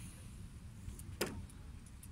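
Low, uneven rumbling noise with one sharp click a little past a second in.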